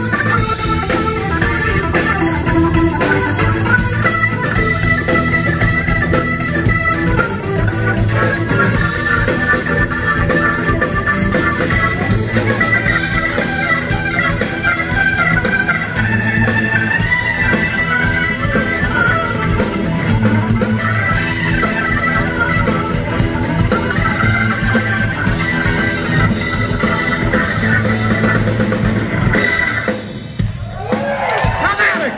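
Live blues-rock organ playing on a Viscount stage keyboard with a Hammond-style tone: held, shifting chords over a repeating bass line, with drums behind it. It cuts off at the very end.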